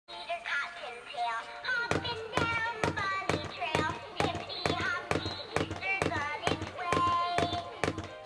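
Animated plush bunny toy playing a song through its small speaker: a voice singing a melody, with a steady beat of about two strokes a second coming in about two seconds in.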